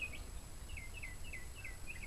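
A bird calling a rapid series of short, falling chirps, about three a second, over a low steady hum.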